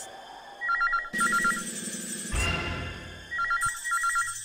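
Push-button desk telephone ringing with an electronic warbling trill, two bursts of rings about two and a half seconds apart. A sudden low swell of film music comes in between the rings.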